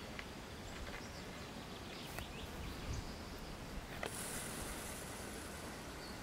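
Faint, steady outdoor background hiss with no clear single source, broken by a couple of soft clicks.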